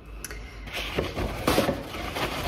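Hands handling things at a kitchen sink where a knitted garment is soaking: irregular rustling and splashing noise. It starts about two-thirds of a second in, with a few louder scrapes around the middle and near the end.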